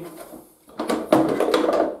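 A portable metal-cutting bandsaw knocking and rattling against its hard-plastic carry case as it is worked loose and lifted out. The clatter starts a little under a second in and goes on as a dense run of knocks.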